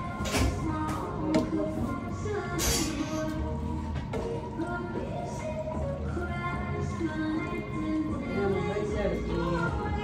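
Music playing with a melody and a deep bass line that recurs every couple of seconds, with a brief clatter about two and a half seconds in.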